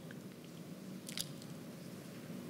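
A pause in the talk: quiet room tone through the microphone, with a faint steady low hum and one brief click about a second in.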